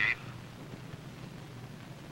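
Low steady hum with faint hiss, the background noise of an old film soundtrack, after the last word of a radio reply at the very start.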